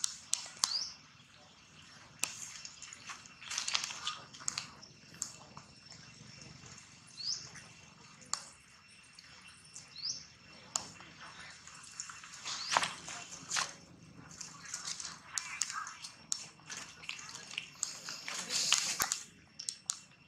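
Scattered crackles and clicks of dry leaves and ground litter being handled and rustled as macaques move and forage, with a few short rising chirps.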